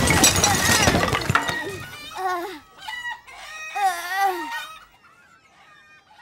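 Cartoon crash sound effect: a loud smash and clatter of things breaking and falling, lasting about a second and a half. Then come several short, wavering squawking calls, fading to faint chirps near the end.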